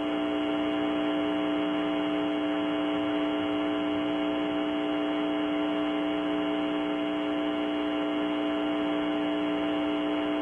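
Steady electrical hum on an old radio-link recording: a fixed low tone with higher overtones over a bed of hiss, holding unchanged.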